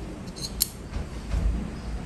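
A metal measuring spoon clicks lightly a couple of times about half a second in, while yeast is poured from it into a bowl of water. Low bumps of handling follow.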